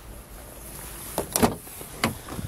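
Handling noise from a handheld camera being moved about inside a car: a low background hum, then one short scuff or rustle about one and a half seconds in.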